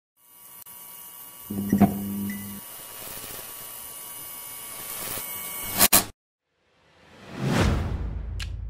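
Neon sign sound effect: a low electric buzz that starts about a second and a half in with a crackle, over a steady hum and hiss. It is cut off by two sharp clicks about six seconds in, and after a brief silence a rising whoosh comes near the end.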